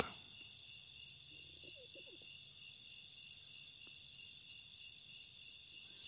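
Faint, steady trilling of crickets, two even high-pitched tones held throughout, over near-silent room tone.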